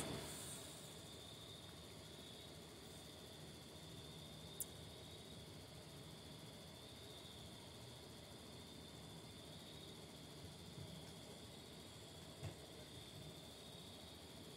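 Near silence: faint background noise with a thin, steady high-pitched tone, broken by one small click about four and a half seconds in.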